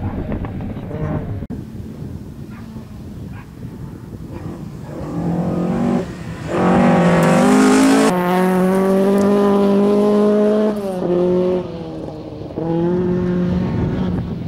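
A Ford Escort Mk1 rally car's four-cylinder engine at high revs as the car races past on gravel. It grows louder from about five seconds in, is loudest through the middle with short breaks in the note as it shifts, drops away briefly near the end, then picks up again as the car pulls away.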